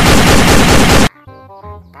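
Plastic toy assault rifle's electronic machine-gun sound effect: a loud, rapid-fire burst that cuts off suddenly about a second in.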